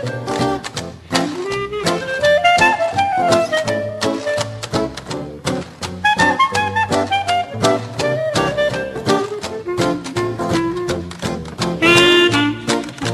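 Hillbilly-jazz band playing an instrumental chorus: a clarinet carries the melody over a steady washboard rhythm, acoustic guitar and plucked string bass.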